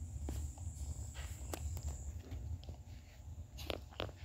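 Scattered light taps and clicks, about eight in four seconds, over a low steady hum. A faint high whine stops about halfway through.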